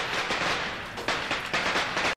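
A string of Chinese firecrackers crackling, rapid pops running together, with fresh louder bursts about a second in and again near the end.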